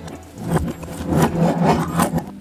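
Metal strips, nuts and bolts of a Mechanix construction-kit model rattling and scraping against one another as the partly dismantled model is turned in the hands and worked with a screwdriver, in a run of irregular clatter from about half a second in.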